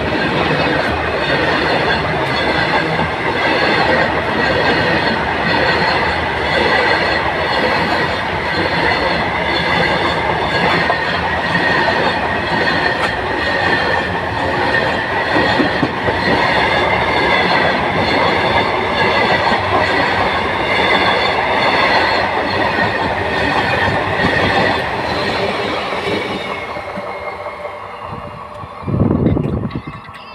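Freight train of BOBYN hopper wagons rolling past at close range: a steady rumble of steel wheels on rail, with a high, wavering squeal from the wheels. The noise fades over the last few seconds as the train moves off, and a brief low burst of noise comes near the end.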